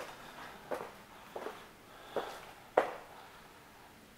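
Footsteps on a hard floor: four steps a little over half a second apart, the last one the loudest.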